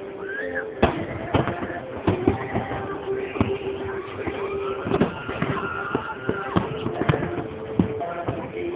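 Aerial fireworks shells bursting in a quick, irregular series of sharp bangs, about a dozen in all, the loudest about a second in.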